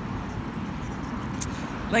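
Steady road traffic noise: an even rumble of passing cars, with one short click about a second and a half in.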